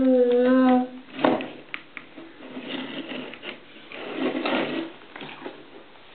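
A drawn-out vowel sound from a voice that cuts off a little under a second in, followed by a knock and a few light clicks from objects being handled on a table, then soft shuffling and murmuring sounds.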